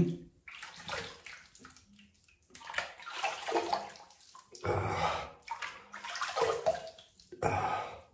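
Water splashed from cupped hands onto the face at a sink, in about five splashy bursts, rinsing the last shaving lather off after a wet shave.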